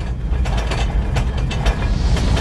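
Deep rumble with fast rattling clicks, growing slightly louder. It is a trailer sound effect of a tremor shaking the dinner table and its tableware.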